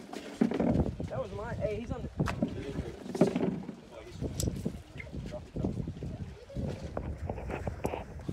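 Indistinct talk from several people, with a few sharp clicks in between.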